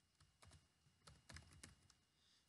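Faint typing on a computer keyboard: a quick, uneven run of about seven keystrokes.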